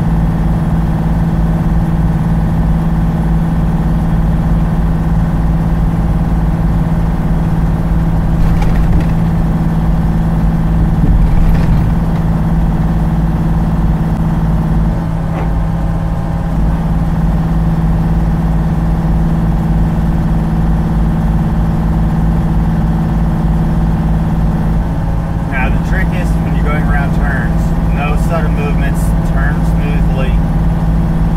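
Steady drone of a loaded semi truck's diesel engine and road noise, heard from inside the cab while cruising downhill on the highway.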